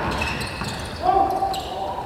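A basketball bouncing on a sports-hall floor during a game, with players' shouts in a large hall; one held call rings out about a second in.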